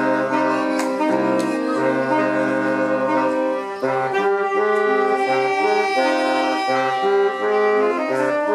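Saxophone quartet of soprano, alto, tenor and baritone saxophones playing a tune in harmony. The baritone's bass line holds long notes at first, then switches to short separate notes about halfway through.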